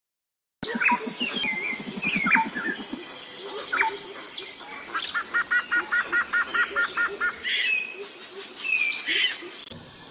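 Several songbirds chirping and calling together, with a run of about a dozen evenly repeated two-note calls in the middle. The birdsong starts just after the beginning and cuts off suddenly shortly before the end.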